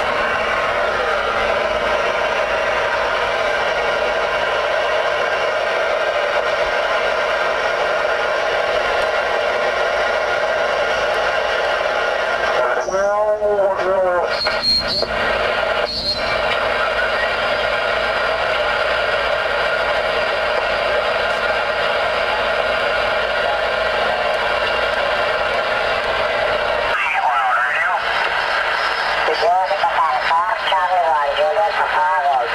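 Ranger RCI-69FFC4 10-meter transceiver's speaker giving steady band static as the receiver is tuned across the band. Garbled, off-tune sideband voices slide through a little before halfway and again near the end.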